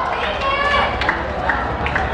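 Young footballers' voices shouting on an open pitch, followed by a few sharp clicks in the second half.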